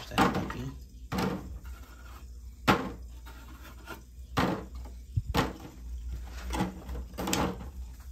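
Irregular light knocks and taps, about seven in all, as dry woody desert rose cuttings are picked up and handled on wooden pallet boards.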